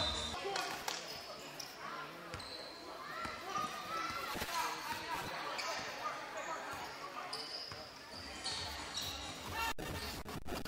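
A basketball being dribbled on a hardwood court during live play in a large indoor gym, with players' and spectators' voices in the background.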